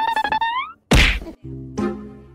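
A short buzzing, pitched sound that rises at its end, then a single loud whack about a second in, followed by background music.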